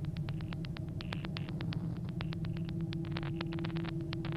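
Rapid, irregular typing on a keyboard, a quick run of key clicks that stops a little past three seconds in, over a steady low hum.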